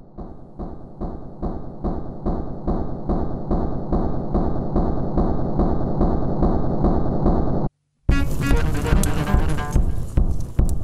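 Electric cello with live electronics: a regular pulsing figure, about three strokes a second, swells steadily louder and then cuts off suddenly about three-quarters of the way through. After a short gap, a denser and louder passage of cello tones with electronic sound begins.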